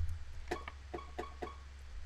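Logic's sampled String Ensemble Pizzicato instrument, sounded as a quick run of about eight short plucked string notes. A sharp click comes just before the notes.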